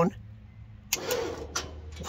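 Electric-over-hydraulic pump motor on a tilt trailer kicking on about a second in and running steadily, switched on from a wireless remote.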